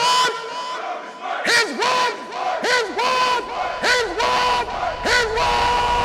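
Produced outro track: a crowd of voices shouting in a repeated rhythm, about two shouts a second, over a steady held tone.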